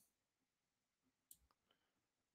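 Near silence, with one faint short click about a second in.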